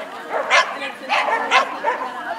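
A dog barking three times in quick succession, over people's voices.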